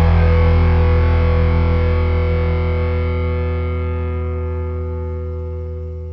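Background music: a single distorted electric guitar chord rings out and slowly fades away.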